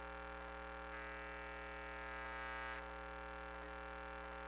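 Steady electrical hum from a sewer inspection camera rig's audio line. From about one second in to just under three seconds, a higher whine sits over it: the crawler's drive motor backing the camera up a short way.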